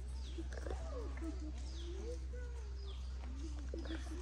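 Faint animal calls gliding up and down in pitch, with short, high, falling chirps about once a second, over a steady low hum.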